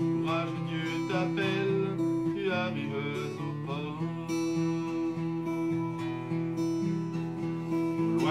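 Acoustic guitar strummed, keeping up a steady chord accompaniment.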